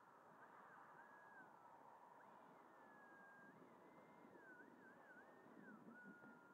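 Near silence, with the faint whine of an 80 mm electric ducted fan on a model jet at taxi power, wavering up and down in pitch as the throttle is worked.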